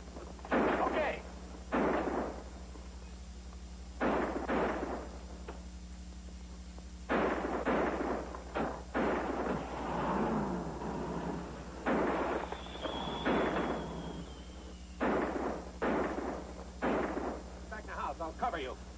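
A gun battle: about twenty gunshots in irregular clusters, each with a short echoing tail. A thin high whine that falls slightly comes about two-thirds of the way through, over a steady low hum from the old soundtrack.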